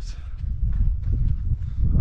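Wind buffeting the camera microphone: a steady low rumble that rises and falls in gusts, with a few faint knocks over it.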